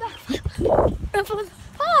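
A child laughing in several short, high-pitched bursts in the second half, after a loud rush of noise on the microphone.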